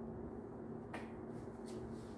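A single sharp click about a second in, then short rustles of a rag being handled and rubbed against a bicycle frame's head tube, over a steady low hum.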